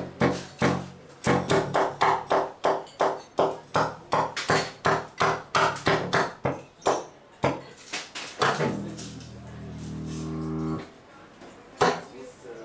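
Solo contrabass saxophone playing a fast run of short, percussive staccato notes, about three a second. Near the end it holds one long low note that grows louder and then stops abruptly.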